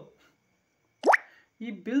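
A single short, sharp rising 'bloop' about a second in, sweeping quickly from low to high pitch: a phone's alert tone, sounding as a 'Not enough free space' pop-up appears on the screen.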